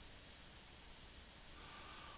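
Near silence: faint steady room-tone hiss, with a weak steady tone coming in during the last half-second.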